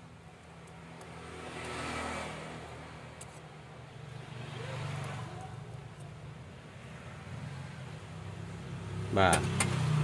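A motor vehicle's engine drones steadily in the background and swells and fades twice, about two and five seconds in, with a few faint small clicks over it.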